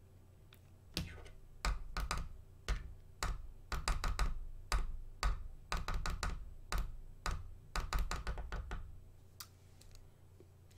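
A run of irregular sharp clicks and knocks, each with a dull thud, a few a second, starting about a second in and stopping about a second before the end.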